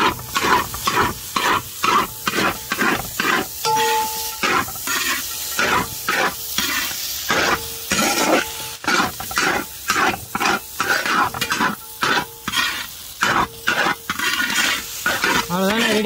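Long-handled metal ladle scraping against a large metal pot as it turns over spiced rice-noodle (idiyappam) biryani, in quick repeated strokes of about three a second.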